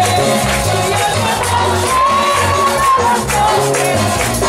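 Live amplified worship music in a lively Latin style, with electronic keyboard and steady bass notes, and the congregation clapping along in time.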